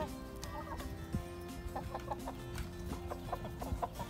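A flock of hens clucking as they peck at grated vegetable feed in a trough, with short calls scattered through and light pecking ticks.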